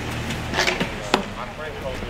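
A few sharp knocks, the loudest just over a second in, with faint voices in the background.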